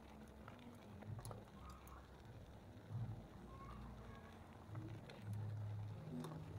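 Bicycle rolling over a rough gravel and dirt path, heard through a handlebar-mounted action camera: a faint low rumble that swells and fades, loudest near the end, with a few sharp ticks and rattles from the bumps.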